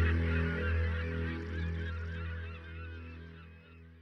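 A flock of birds calling, many short overlapping cries, over a low steady held tone. The whole sound fades out steadily.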